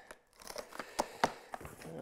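Cardboard shipping box being opened by hand: packing tape tearing and cardboard flaps crinkling and scraping, with a few sharp clicks about a second in.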